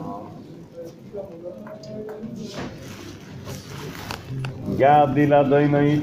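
Men chanting Hebrew prayers: a faint murmured chant at first, then, near the end, a single male voice breaks in loudly with a sung, wavering liturgical melody.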